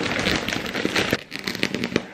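Clear plastic wrapping crinkling and crackling as a large new pillow is pulled out of it by hand.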